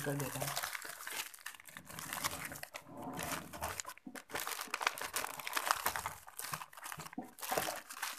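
Sheets of paper rustling and crinkling as they are handled and shuffled, in irregular bursts of crackle.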